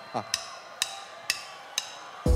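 Four sharp wooden clicks, evenly spaced about half a second apart: a drummer's stick count-in just before the band comes in.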